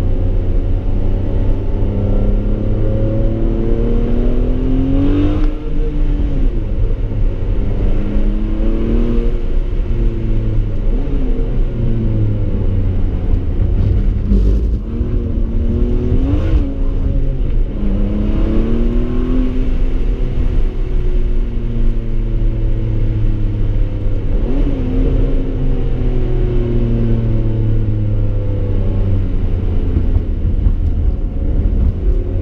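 Ferrari 599 GTB's V12 engine heard from inside the cabin, accelerating hard through the gears. Its pitch climbs, then drops back at each upshift, about six times in a row.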